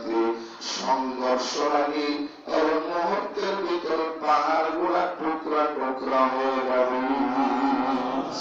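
A man chanting in a sung, melodic tone through a microphone and PA, in phrases a second or so long with some notes held.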